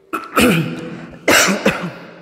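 A man coughing: two loud coughs about a second apart, the second followed by a smaller one.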